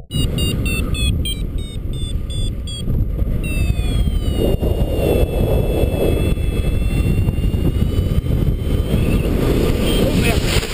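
Wind rushing over the microphone of a paraglider's camera in flight. Above it a paragliding variometer beeps about three times a second for the first three seconds or so, then gives a continuous tone that slides a little lower and holds.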